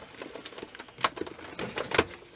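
Irregular rustling and clicking as the heavy bag fabric and the plastic embroidery hoop are handled, pulled and shifted to free the finished embroidery from the embroidery machine.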